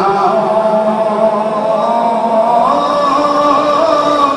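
Devotional chanting in long held sung notes, the melody stepping up in pitch about two and a half seconds in.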